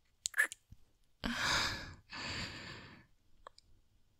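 A woman's close-miked kissing sounds: a few short wet lip smacks, then two long breathy sighs, one after the other.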